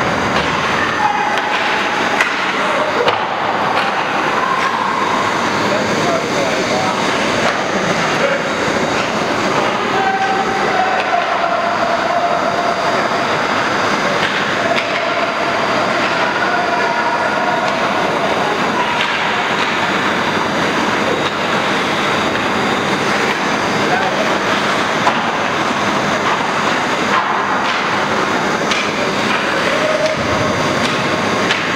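Steady din of a youth ice hockey game in a rink: skates and sticks on the ice, with voices calling out now and then.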